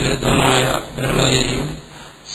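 A man's voice speaking in drawn-out phrases at a low, steady pitch.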